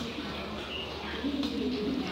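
A dove cooing in the background: a few short, low hoots in the second half.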